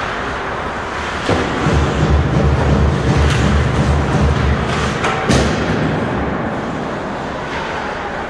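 Ice hockey game sounds in a rink over steady arena noise: a sharp knock about a second in, a low rumbling for a few seconds, then another sharp knock about five seconds in.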